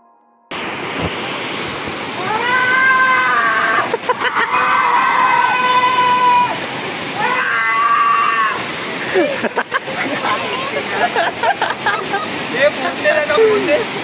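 Water from a waterfall cascade rushing steadily over rock ledges, cutting in suddenly about half a second in. Over it a voice gives three long, held calls, followed by shorter shouts.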